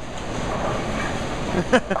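Steady rumbling din of a busy bowling center, the background noise of balls and pins on the lanes and people around them. A man laughs briefly near the end.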